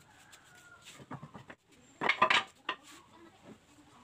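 Wooden boards being laid down one by one on a concrete floor, knocking and clattering against the floor and each other, with the loudest clatter about two seconds in.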